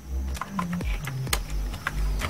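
Computer keyboard keys clicking a few times as characters are typed, over a low rumble and faint background music.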